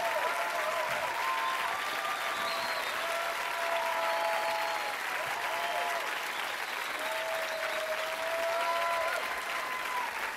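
Studio audience applauding steadily, with whoops and cheers held over the clapping.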